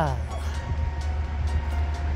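Steady low rumble of outdoor background noise, with a faint steady hum above it.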